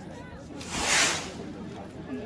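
A brief rushing hiss that swells and fades, loudest about a second in, over faint crowd chatter.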